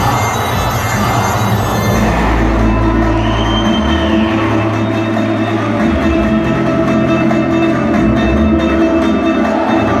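Folk dance music accompanying the performance, loud and unbroken, with long held low notes that shift every couple of seconds.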